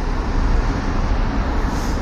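Road traffic on a city street: passing cars make a steady noise, heaviest in the low range, with no single event standing out.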